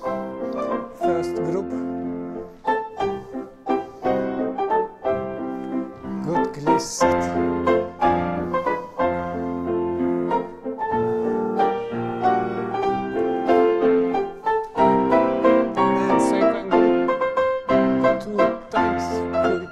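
Piano music accompanying a ballet class, a rhythmic piece of chords and melody with a regular beat for jumps.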